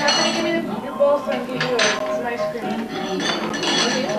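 Dishes and cutlery clinking, with indistinct voices in the background.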